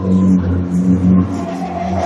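Street traffic: a motor vehicle's engine running close by with a steady low hum.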